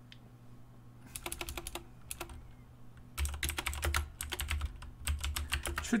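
Typing on a computer keyboard: a short run of keystrokes about a second in, then a longer, faster run of keystrokes from about three seconds in to the end.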